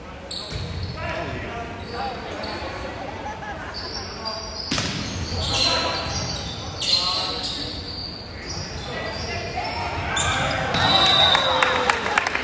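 Volleyball rally in a gym: sharp slaps of the ball being served and struck, the loudest about five seconds in, over players' and spectators' voices. The voices swell into louder cheering near the end as the point is won.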